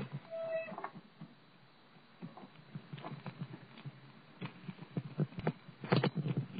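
A bicycle ridden over pavement, its frame and fittings clicking and rattling irregularly over a low rumble. A short high squeak sounds about half a second in.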